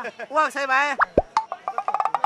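A man speaking Thai close to the microphone, then a sudden low thump about a second in, followed by a fast run of short clicking pulses.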